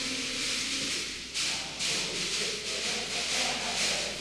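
Caxirolas, plastic hand-held shaker rattles, being shaken by hand, giving a dry, hissing rattle in short, irregular bursts.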